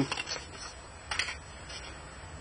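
Thin plastic lid being pried off a small plastic cup, with a few faint clicks and then one short crackle about a second in.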